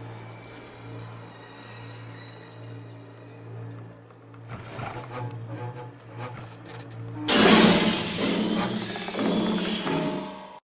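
Horror-film soundtrack: a low steady drone, then about seven seconds in a sudden loud burst of harsh noise, a jump-scare sting, that lasts about three seconds.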